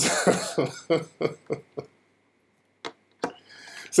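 A man laughing: a quick run of short bursts over about two seconds that trails off, then a couple of faint clicks.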